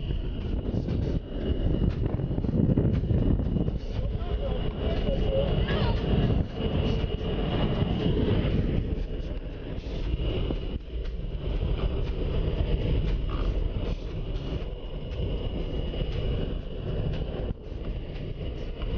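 Small propeller-driven jump plane, heard from inside the cabin: its engine runs with a steady loud drone, mixed with rushing air through the open side door.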